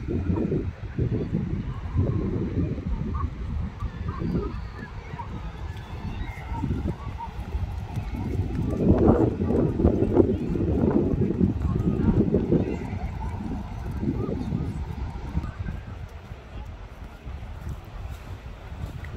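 Wind buffeting the phone's microphone in irregular gusts, heaviest around the middle, with beach ambience faintly behind.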